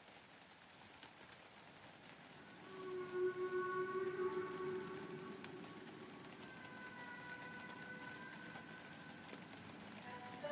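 Quiet opening of a lo-fi track: a steady hiss like light rain, then soft sustained chords fade in about two and a half seconds in and hold.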